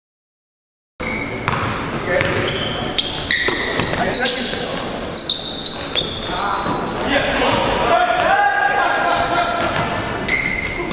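Silence for about a second, then the sound of a basketball game in a gym: the ball dribbling, sneakers squeaking on the hardwood, and players calling out, all echoing in the hall.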